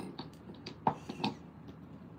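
A handful of light, sharp clicks and taps, about five in a second and a half, from hands handling small hard objects on a work surface.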